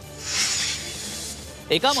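A whoosh transition sound effect: a hiss that swells up and dies away within about a second, over quiet background music. A narrator's voice comes in near the end.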